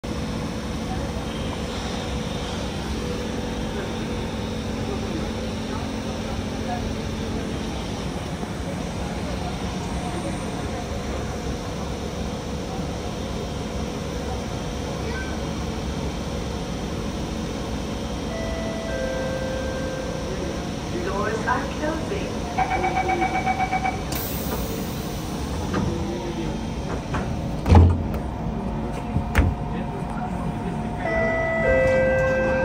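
Siemens C651 MRT train standing at a platform with its doors open, a steady background hum. About twenty seconds in a chime sounds, then a couple of seconds of rapid door-closing warning beeps, and the doors shut with two sharp thuds near the end.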